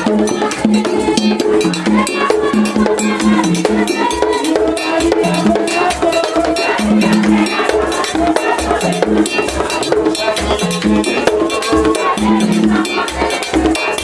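Haitian vodou dance music: drums and percussion beating a fast, steady rhythm, with a melody line over it.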